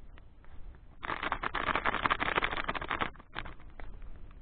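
Plastic snack packet crinkling and rustling in the hands for about two seconds, starting about a second in, followed by a few scattered crackles.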